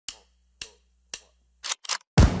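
Three sharp clicks about half a second apart, like ticks, then two short, fuller bursts near the end, over a faint low hum.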